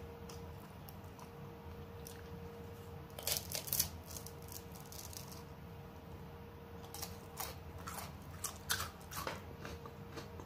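Close-up mouth sounds of a person eating an ice cream cone, licking and biting into it, heard as two short spells of sharp clicks about three seconds in and again from about seven to nine seconds. A steady low hum sits underneath.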